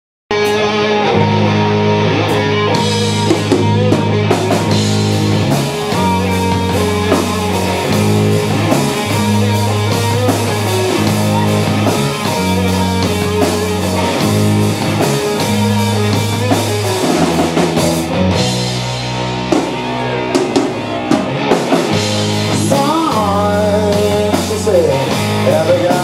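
A live rock band plays loudly and steadily, with electric guitar, bass guitar and drum kit.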